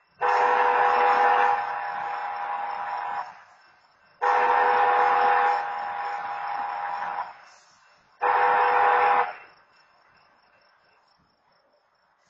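BNSF diesel locomotive air horn sounding two long blasts and one short one, each a steady chord of several notes. Each long blast is loudest in its first second or so, then holds at a lower level.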